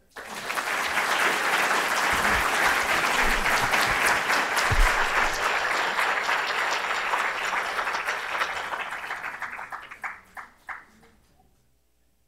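Audience applauding, starting at once, holding steady for several seconds, then thinning to a few last claps and stopping.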